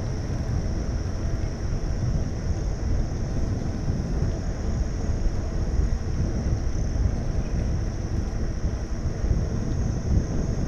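Wind buffeting the microphone of a camera on a moving bicycle: a dense, uneven low rumble, with a steady high hiss above it.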